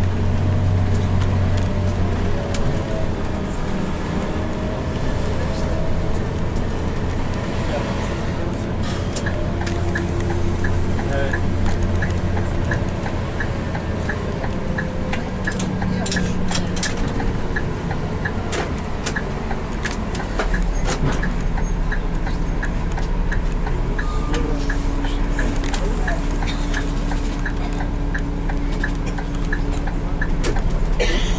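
Bus engine and road noise heard from inside the cab while driving, a steady low drone. A light regular ticking runs through the middle. About two-thirds of the way through, the engine note deepens and grows louder.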